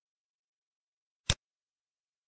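A single short, sharp click of a button being pressed in an on-screen interface, against complete silence.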